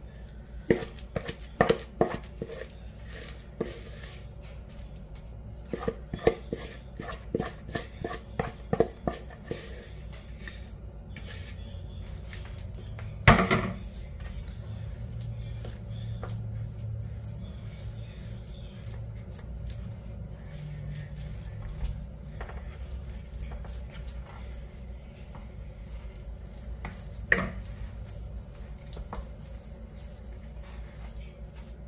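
Wooden spoon scraping and knocking against a bowl and a metal baking pan as thick oat batter is scooped out and pressed flat, in clusters of short clicks and taps. One loud knock comes about halfway through and another near the end, over a steady low hum.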